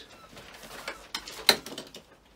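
Paper and plastic packaging rustling as a parcel is handled and unwrapped, with a few small clicks and one sharp click about one and a half seconds in.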